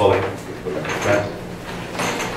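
A man's voice reading aloud in Spanish ends a word, followed by a short pause filled with softer, brief speech.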